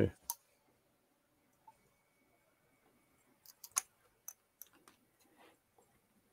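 A few faint, short clicks and light knocks at a desk against quiet room tone, most of them bunched about three and a half to five seconds in.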